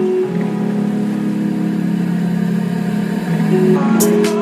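Background music of sustained low chords that change a few times.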